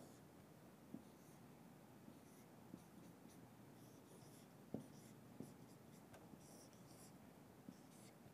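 Faint strokes and squeaks of a marker drawing on a whiteboard, with a few light taps as the pen meets the board.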